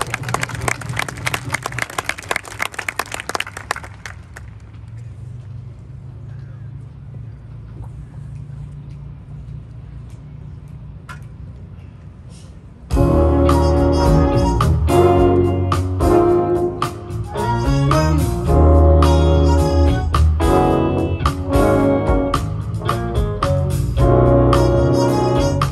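Audience applause for the first few seconds, fading into a quieter stretch with a low steady hum. About thirteen seconds in, a symphony orchestra comes in loudly with the introduction of a jazz standard arrangement.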